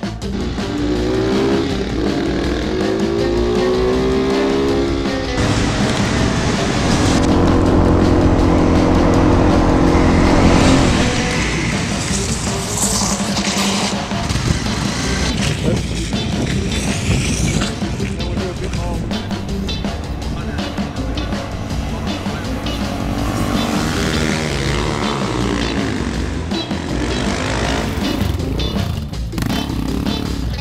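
Small-displacement motorcycle engines revving and accelerating, with pitch rising and falling in runs. The loudest stretch is a held high-revving note about a third of the way in. Background music plays throughout.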